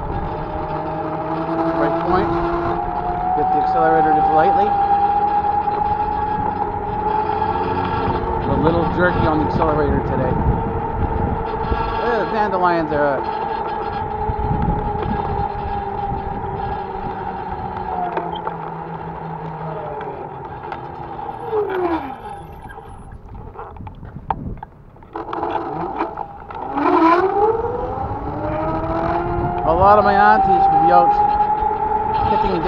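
Motor whine of the small vehicle carrying the camera, rising in pitch as it picks up speed, holding steady, then falling away and almost stopping a few seconds from the end before climbing again. Road and wind noise run underneath.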